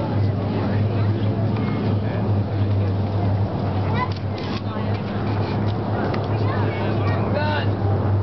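Formation of B-25 Mitchell bombers flying past, their radial piston engines making a steady low drone, with crowd voices over it.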